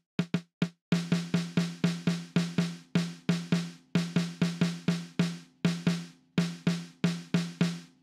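Sampled Tama Bell Brass snare drum in the BFD3 virtual drum plugin, struck over and over at about three to four strokes a second with a few short breaks. Each stroke is short and dry with a brief low ring, the snare being heavily damped by the plugin's damping setting.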